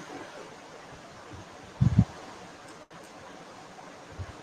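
Steady hiss of an online call's microphone and room, broken by two short low thumps in quick succession about two seconds in, with a brief dropout in the audio just after.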